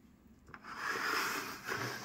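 A rustling scrape lasting about a second and a half, after a single click, as a plastic model building is handled and turned on a paper-covered work surface.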